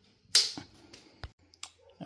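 Handling noise: a short, sharp rustle about a third of a second in, followed by a few faint clicks.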